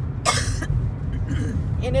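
A single short cough about a quarter second in, over the steady low rumble of road and engine noise inside a moving car.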